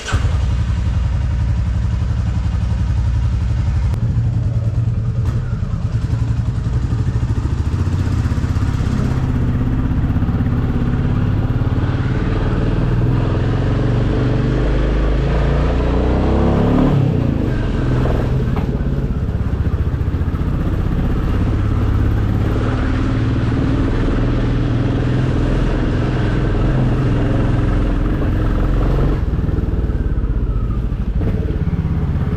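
Royal Enfield Classic 350's single-cylinder engine running as the motorcycle is ridden, with a deep, steady thump and the engine note sweeping in pitch around the middle as it changes speed.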